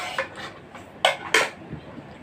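Utensils clinking and scraping against plates at a meal table: a sharp clink at the start and two more about a second in.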